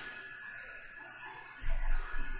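Quiet microphone room tone with a faint steady hiss. Near the end comes a louder, low, muffled noise.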